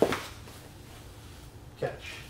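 A single soft thud of a grappler's body shifting its weight onto a foam grappling mat, followed by faint rustling of bodies and clothing moving on the mat.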